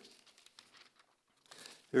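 Faint rustling of paper sheets being handled and shifted at a pulpit, picked up by the lectern microphone; a man's voice starts at the very end.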